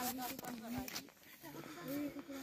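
An indistinct person's voice, faint and without clear words, dipping briefly about a second in.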